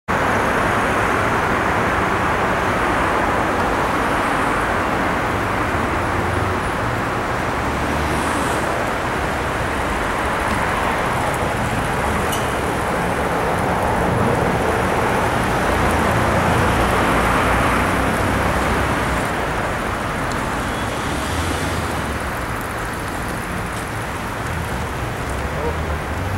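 Road traffic on a busy city street: a steady rush of passing cars, swelling and fading as vehicles go by.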